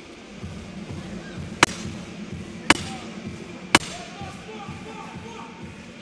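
Three sharp knocks about a second apart over a steady low hubbub of an arena.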